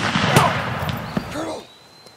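Revolver gunfire: a loud shot with its echo, and another sharp crack about a third of a second in, the noise dying away after about a second and a half.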